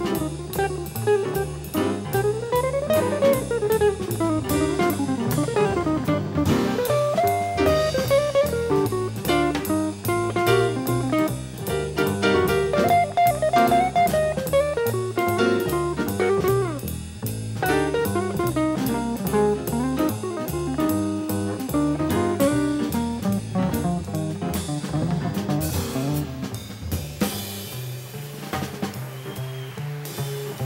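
Live jazz combo playing: fast melodic runs over drum kit and bass, the playing dropping in level near the end.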